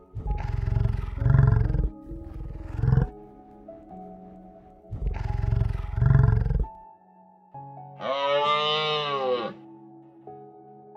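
Bison bellowing: low, rough grunting calls in two bouts, the first in the opening three seconds and the second about five seconds in, over background music with sustained tones. Near the end a higher, drawn-out call falls in pitch.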